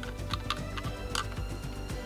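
A few light clicks of hard plastic accessory pieces knocking together as they are handled and stacked, the sharpest about a second in, over background music.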